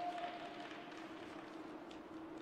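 Soft, quiet program music with held notes, one of which fades out in the first half-second, over the faint hiss of ice-dance skate blades gliding on the ice.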